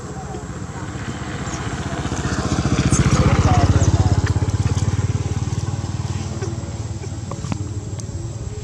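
A motorcycle engine passing by, growing louder to a peak about three to four seconds in, then fading away.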